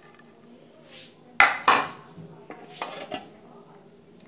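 Kitchen utensils and cookware clattering: a sharp metal clink and scrape about a second and a half in, with a few lighter clicks after it.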